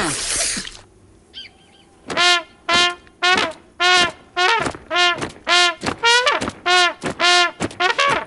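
Cartoon soundtrack: a short noisy whoosh at the very start, then about a dozen short, brass-like notes on one pitch, evenly spaced about two a second, each scooping up into the note.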